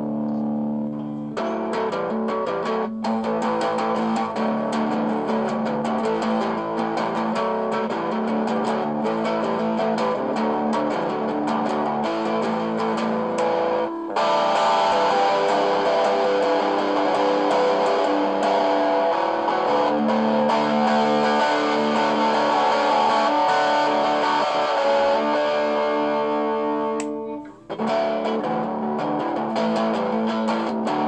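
Electric guitar in a self-made alternate tuning, playing a made-up song of ringing chords. The playing stops briefly about halfway through and again near the end, then picks up.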